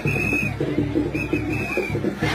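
Two shrill whistle blasts, the second longer, over music with a steady beat.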